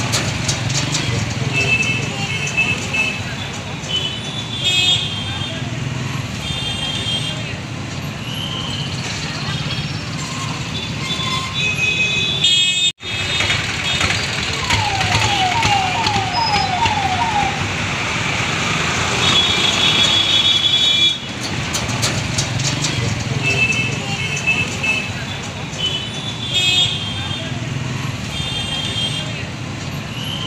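Busy town-street traffic: motorcycle and other vehicle engines running steadily, with repeated short horn toots and the voices of people in the crowd. The sound cuts out for a moment about 13 seconds in.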